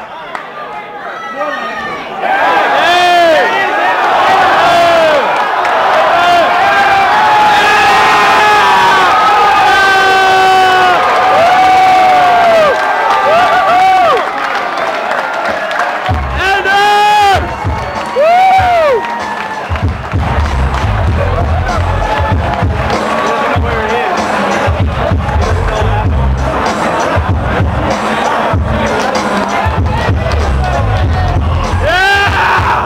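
Arena crowd cheering and screaming, with loud individual yells close by, at the end of a cage fight. Just past halfway, loud music with a pounding bass beat starts under the cheering.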